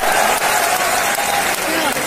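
Large audience applauding, a dense steady clatter of many hands. A held tone rides over it and stops about a second and a half in.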